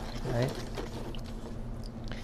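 Wooden paint stirrer stirring dye water in a plastic tub, scraping against the tub's bottom and swishing the water in a run of small clicks and scrapes.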